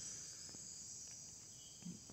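Faint, steady high-pitched chorus of insects trilling, with a couple of faint ticks and a brief soft low bump near the end.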